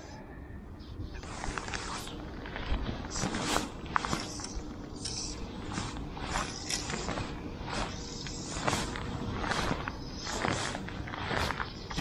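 Irregular rustles and scrapes of hands handling fly line, rod and clothing close to the microphone, about one or two a second, over a light steady hiss.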